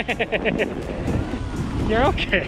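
Brief wordless voice sounds, short bending cries early on and again near the end, over wind noise on the microphone.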